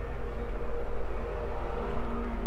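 Steady low background hum with a few faint steady tones underneath; no distinct event.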